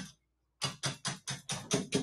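Egg whites being whisked by hand in a bowl: rapid, even clicks of the whisk against the bowl, about six strokes a second, starting about half a second in.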